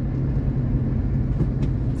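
Car cabin noise while driving: a steady low rumble of engine and road with a constant low hum.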